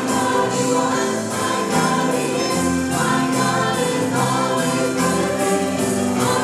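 Live worship band and vocal team performing a song: several singers in harmony over piano, electric guitar and drums, with a steady beat.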